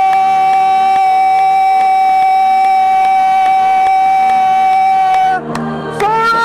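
Live worship band music: a single high note held steady for about five seconds, breaking off shortly before the end.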